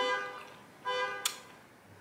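A woman's short, flat closed-mouth 'mm' of enjoyment while chewing food, about a second in, ending with a sharp click.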